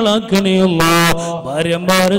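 A man's voice chanting an Islamic recitation in long, held melodic notes, the pitch stepping between tones a few times.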